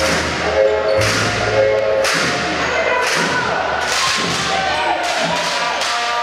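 A drum beaten steadily about once a second, each beat ringing on briefly, over the noise of a crowd's voices in a sports hall.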